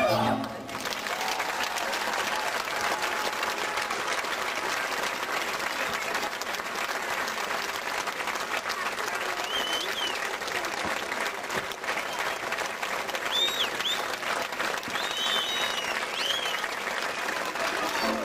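A folk band's tune ends within the first second, then an audience applauds steadily, with a few short high calls from the crowd in the second half.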